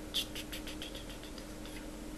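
A quick run of small, light clicks, about a dozen over a second and a half, the first the loudest, over a faint steady hum.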